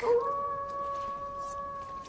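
A single long howl held on one steady pitch. It starts sharply and sags a little lower as it fades near the end.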